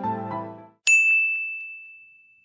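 Background music fades out, then a single bright ding sounds just before the middle and rings on as one high tone, slowly dying away: a logo chime sound effect.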